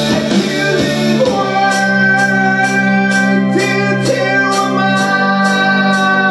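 Live band music: held chords that change about a second in, after which a steady percussive beat of about two hits a second comes in.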